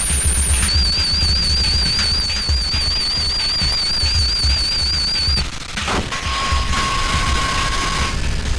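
Improvised electronic noise music from turntables, electronics and a modular synthesizer: a dense, fast rattle of low pulses under high warbling tones that stop about five and a half seconds in, after which a steady mid-pitched tone holds.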